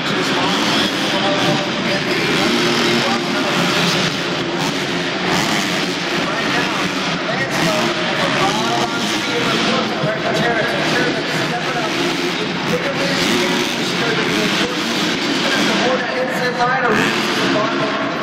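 Motocross bike engines running and revving on an indoor dirt track, blended with echoing arena commentary and crowd noise.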